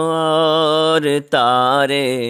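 A man chanting a devotional Urdu verse (naat) in long, drawn-out notes: one held note, a short break about a second in, then a phrase that wavers in pitch.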